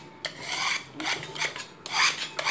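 Hand putty knife scraping loose, peeling paint off a plastered wall in several short strokes, the flaking paint coming away as it is scraped.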